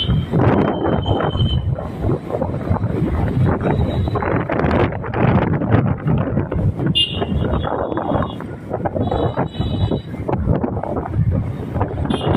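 Road and engine noise from a moving vehicle in town traffic, with wind buffeting the microphone. A few short high-pitched beeps sound about seven and nine seconds in.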